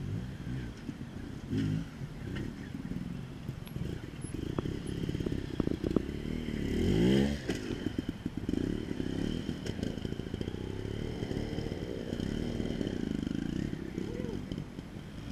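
Trials motorcycle engine blipping and revving as the bike climbs over rocks, with one sharp rev that rises and falls about seven seconds in, the loudest moment. Knocks and scrapes of the bike against rock come with it.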